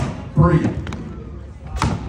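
Axe blows chopping into a log: one sharp hit right at the start and another near the end, with a man's voice calling the count of hits in between.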